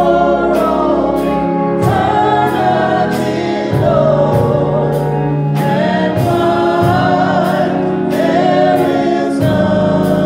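A man sings a gospel song solo, accompanying himself on an electronic church organ. Held organ chords sit under a sliding, sustained vocal line, with light ticks about twice a second.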